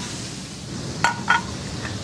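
Two quick ringing clinks of kitchenware, about a quarter second apart, over a steady background hum.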